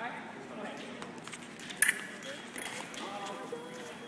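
Foil bout exchange: a sharp clack about two seconds in, then the electric scoring box's steady beep starts about a second later, registering the touch, an attack that landed off target.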